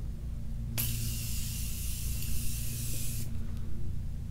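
Morphe continuous setting mist spray bottle releasing one unbroken fine mist for about two and a half seconds. The hiss starts about a second in and cuts off suddenly.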